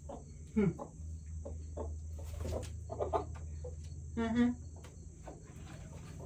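Broody hen making short, low clucks at irregular intervals, the loudest about four seconds in: the grumbling "tuk, tuk, tuk" of a hen determined to stay broody. A steady high insect chirring runs underneath.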